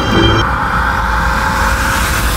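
Outro soundtrack: the music's melody stops about half a second in, giving way to a steady rushing, rumbling sound effect.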